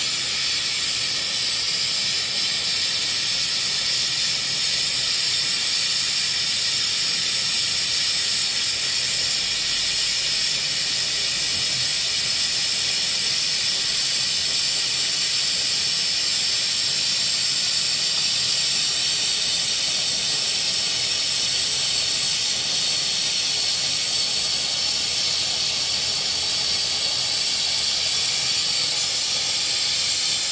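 Oxygen and MAP-Pro fuel torch burning with a steady, even hiss of the flame and gas flow.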